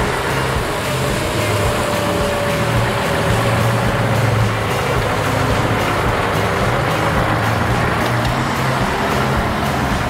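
Scania 141's 14-litre V8 diesel running at low speed as the truck turns and drives slowly past close by, a steady low engine note.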